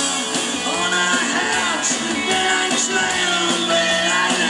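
Live rock band playing loudly and continuously, with electric guitar and sliding, wavering melody lines.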